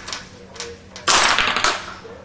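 Mechanical binary-counter model worked by a lever: a few light clicks, then about a second in a dense, loud clatter of hard plastic parts and flip toggles, lasting over half a second and ending in a sharp click.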